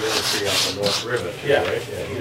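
Low, indistinct voices with a rubbing, rasping noise through roughly the first second.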